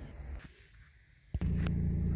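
BMW diesel engine started with a foot on the brake, catching suddenly about a second and a half in and settling straight into a steady idle.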